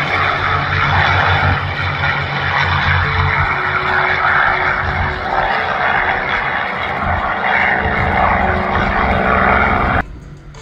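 Two P-51D Mustangs' Packard Merlin V12 engines at high power, a loud steady drone as the pair roll together down the runway on their takeoff run.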